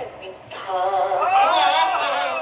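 A man singing a devotional ghazal: after a brief break near the start, one long ornamented phrase that rises and falls in pitch.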